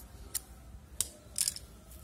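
Large steel scissors snipping through a folded plastic carry bag: three short, crisp snips about half a second to a second apart.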